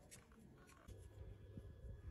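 Near silence, with faint scratching and a few light clicks in the second half.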